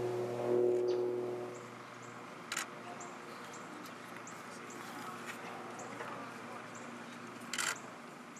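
Outdoor golf-course ambience: a steady low hum fades out in the first two seconds, leaving faint, repeated high bird chirps and two sharp clicks.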